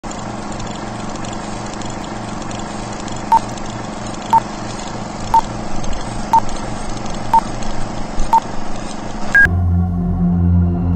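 Steady hiss with a low hum, like analog video static, under six short electronic beeps evenly spaced a second apart. A single higher beep follows about nine and a half seconds in; the hiss cuts off and a low drone begins.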